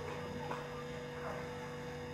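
A steady low electrical-type hum with faint voices underneath.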